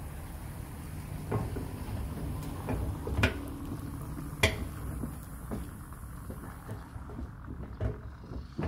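A microfibre towel being handled and wiped over a detached car fender resting on a plastic bin, with a few sharp knocks and clicks, the loudest about three and four and a half seconds in, over a steady low hum.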